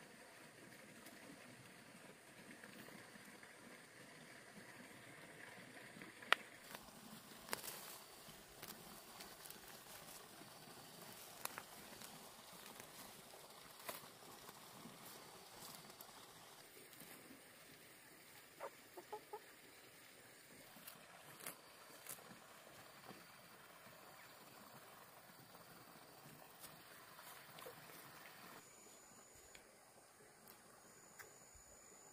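Near-quiet rural outdoor ambience with scattered sharp snaps and rustles as wild greens are plucked by hand from the undergrowth. Chickens cluck faintly now and then.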